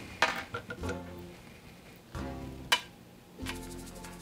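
Quiet instrumental background music, with a few light clicks and knocks as an apple is handled on the tines of a crank apple peeler-corer. The sharpest click comes just under three seconds in.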